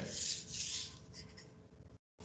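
Marker pen drawing on a whiteboard: two hissing strokes in the first second, then fainter rubbing with a few light ticks as the pen lifts.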